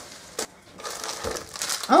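Gift wrapping paper crinkling as a small wrapped package is picked up and handled, with a sharp click just under half a second in and a soft bump a little after a second.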